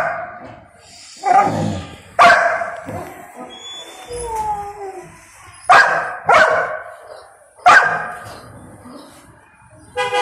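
Young golden retriever barking in protest at being made to wait for its food: five short, sharp barks, two near the start, two about six seconds in and one near eight seconds, with a brief falling whine in between.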